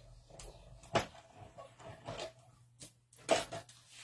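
Knocks and clatter from running a cardstock panel through a manual die-cutting machine: a sharp knock about a second in and another burst of clatter a little after three seconds, over a faint steady hum.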